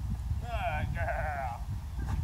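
A high, wavering voice-like call in two parts, lasting about a second, over a steady low rumble.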